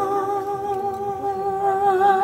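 A man's singing voice holding one long note with a slight vibrato through a live PA, with the band's low accompaniment dropped away.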